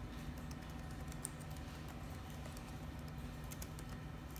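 Irregular clicking of a computer keyboard and mouse over a steady low hum.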